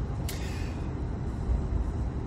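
Steady low rumble of road and engine noise inside a car's cabin while driving, with a brief hiss about a third of a second in.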